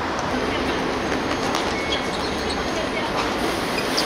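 Steady rushing background noise of an outdoor football game, with faint distant voices and a few small clicks.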